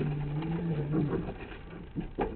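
A man's drawn-out hum, a held "mmm" of about a second on one low pitch that lifts slightly at the end, followed by faint voice sounds.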